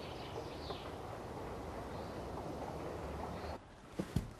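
Steady outdoor background noise, an even hiss with a low rumble, that cuts off suddenly near the end.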